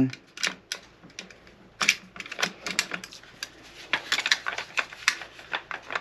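Benelli SuperNova pump shotgun parts clicking and knocking together as the barrel is worked and aligned into the receiver during reassembly. The clicks come irregularly, in short bunches, as the parts catch and slip before seating.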